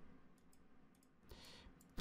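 Near silence with a few faint computer mouse clicks, the clearest about one and a half seconds in.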